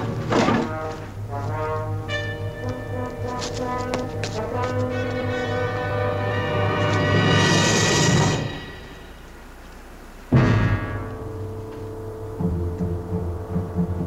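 Dramatic orchestral score with brass and timpani, building to a loud swell about eight seconds in and then falling away. About ten seconds in a single sharp thud cuts in, the loudest moment, and the score resumes quietly after it.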